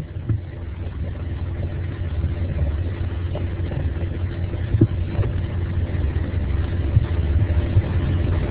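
A steady low rumble with a faint hum, and a few small knocks.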